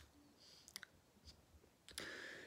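Near silence with a few faint, brief clicks: one at the start, two close together a little before the middle, and one near the end.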